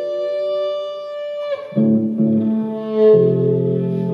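Live instrumental music: a violin holds one long note, then bass guitar and digital piano come in with low notes about halfway through, swelling into a louder chord near the three-second mark.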